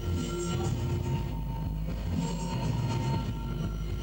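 Live electronic music: a dense, low droning texture with a few held tones, and a hissing noise layer that swells and fades about every two seconds.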